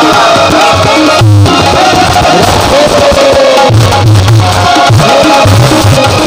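Live Indian devotional music: a gliding melody line over keyboard, with deep tabla strokes coming back in during the second half.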